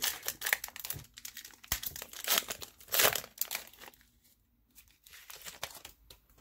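Foil trading-card pack wrapper being torn open and crinkled by hand, a run of irregular crackles that is loudest in the first three seconds and dies away about four seconds in.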